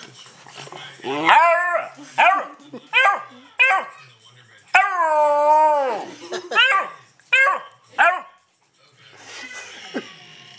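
A two-month-old hound puppy bawling: about eight short, rising-and-falling baying calls, with one longer drawn-out bawl about halfway through. This is the pup opening up, starting to bay.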